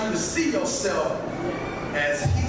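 Speech only: a man preaching into a handheld microphone, his voice coming through the PA.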